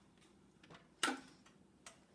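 A sharp click about a second in, with a short ringing tail, then a smaller click near the end, over faint light ticking.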